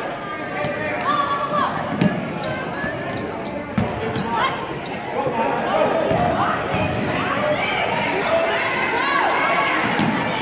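Basketball thudding on a hardwood gym floor, with two sharper thuds about two and four seconds in, under the shouting and chatter of players and spectators in the hall.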